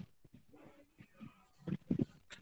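Faint, indistinct speech over a video-call line, with a brief louder stretch of voice near the end.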